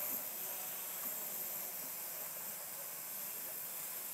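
Walkera QR Y100 mini hexacopter's six small electric motors and propellers running with a steady hissing whir as it lowers itself onto the table under its automatic one-key landing.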